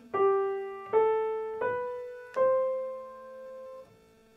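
Piano played one note at a time in the right hand: four notes climbing stepwise G, A, B to C, each struck and left to ring, the last one held for about a second and a half before it is released.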